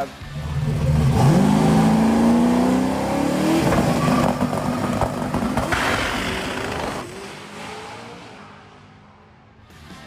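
Turbocharged 540 big-block Chevy V8 in a C4 Corvette drag car at full throttle on the strip: the engine note climbs steeply over the first few seconds, holds loud, then fades away over the last few seconds as the car moves off.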